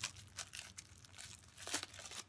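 Thin plastic wrapper crinkling and crackling as it is handled around a squishy toy, in a string of small rustles with a louder crackle near the end.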